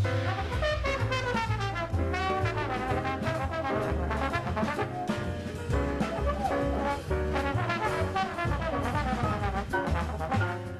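Jazz quartet playing: a trombone carries the lead line over piano, a bass stepping from note to note, and drums.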